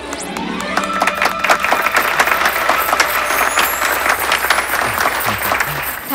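Audience applauding, dense and steady, over background film music with held tones.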